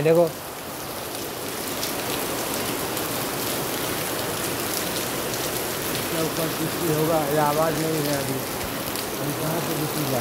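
Steady rain falling, a continuous even hiss.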